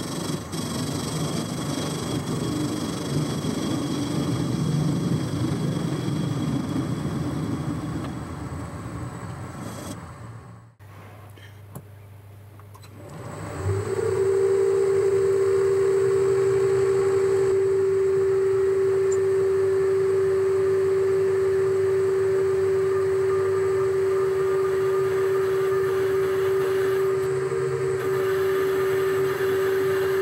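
Metal lathe (Boxford) facing the end of a cast handle, with a steady, noisy cutting sound for about ten seconds. After a short spell of just the lathe running, a centre drill in the tailstock feeds into the spinning work, and a loud, steady high whine holds from then to the end.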